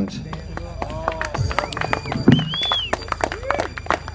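Music with sweeping sound effects played over an outdoor public-address system, with voices mixed in and a steady low hum underneath.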